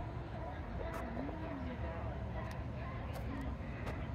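Faint voices of people talking at a distance over a steady low outdoor rumble, with a few light clicks.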